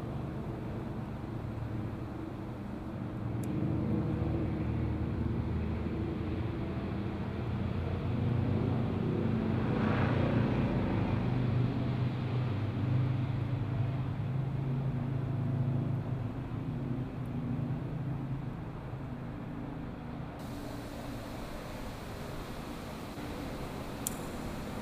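Engine drone of a passing vehicle: a steady low hum that grows louder to a peak about ten seconds in, then slowly fades.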